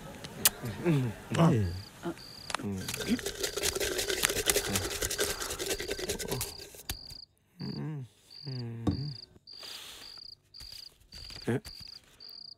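Cricket chirping steadily, short high chirps about two a second, with a stretch of rustling noise in the first half and a few brief murmured voice sounds.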